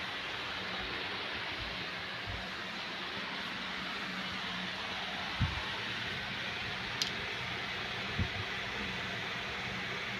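Steady hiss of a room air conditioner running, with three faint knocks in the second half.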